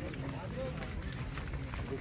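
Murmur of a large crowd of men talking over one another, with no single voice standing out.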